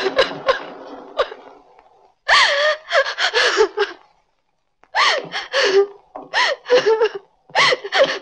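A person's voice in wordless outbursts with gasps: three runs of short, high, pitch-bending vocal cries, separated by brief silences.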